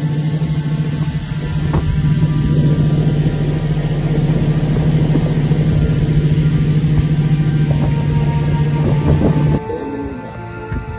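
Outboard motor of a small river boat running steadily at speed, with wind and rushing water from the wake. It stops suddenly near the end.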